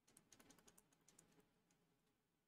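Faint, quick clicks and taps of a stylus writing on a tablet screen: about a dozen in the first second and a half, then trailing off.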